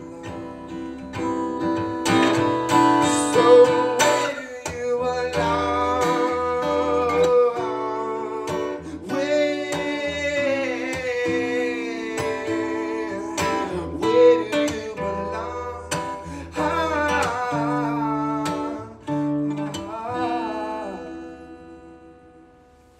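Acoustic guitar strummed with a man singing over it, the closing passage of a live unplugged song. The sound dies away near the end as the last chord fades.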